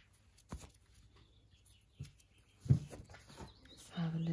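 Quiet bench with the nail drill switched off: a sharp click about half a second in, a smaller click later, and a louder dull knock near the three-quarter mark, from the drill handpiece and tools being handled.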